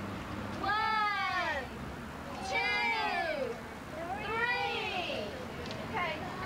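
Three long meows, each about a second long and about a second and a half apart; each rises and then falls in pitch.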